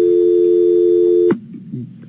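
Telephone line tone: two steady notes sounding together, cutting off suddenly about a second and a half in, then faint voice.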